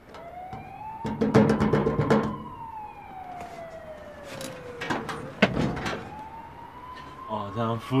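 A wailing siren: its pitch rises for about two seconds, falls slowly over about three, then rises again. Short, sharp sounds cluster about a second in, and two sharp knocks come about five seconds in.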